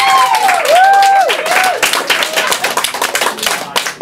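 Audience applauding with steady, dense clapping, and whooping cheers rising and falling over the first two and a half seconds.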